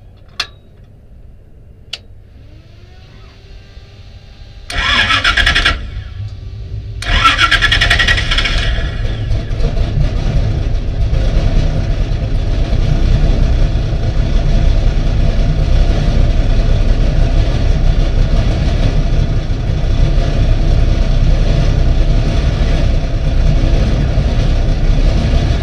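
Stock car engine being started: two sharp clicks, then a loud burst of firing about five seconds in that dies back briefly before the engine catches about two seconds later and settles into a steady, loud idle.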